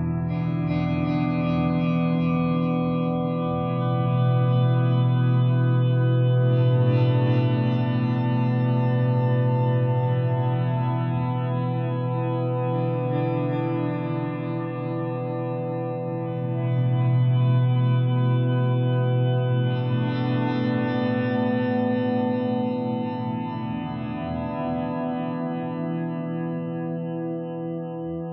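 Ambient guitar music: sustained, echo-laden chords over a low drone. It swells about four seconds in and again past the middle, then thins and fades near the end.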